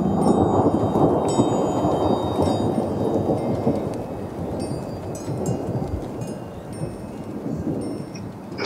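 Sound effect of a low, rain-like rumble with scattered high chime-like tones, fading gradually over several seconds.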